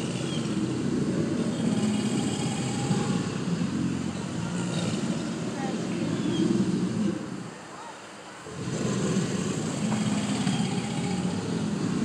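Chorus of American alligators bellowing: deep, overlapping rumbling calls, with a brief lull about eight seconds in before the bellowing starts again.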